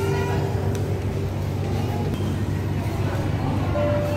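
Background music of long held notes that drops away about a second in and returns near the end, over a steady low hum and the indistinct voices of a busy room.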